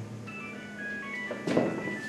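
A mobile phone ringtone: a melody of short, high electronic tones stepping up and down in pitch.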